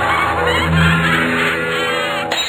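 Instrumental backing music of a children's Halloween song between sung lines, with sustained notes and a wavering, warbling high sound near the end.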